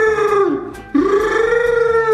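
A man's voice imitating the MGM lion's roar: long, drawn-out vocal roars, the second starting about a second in and held for over a second.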